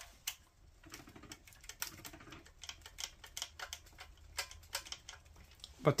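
Faint, irregular small metal clicks and taps from a thin hand tool and fingers working the governor linkage of a Predator 212cc small engine.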